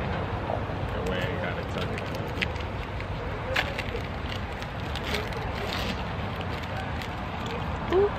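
Food crackling on an outdoor grill: scattered light pops and ticks over a steady low rumble, with faint voices in the background.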